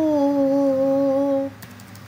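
A woman's voice humming one note that slides down in pitch and then holds steady, stopping about one and a half seconds in.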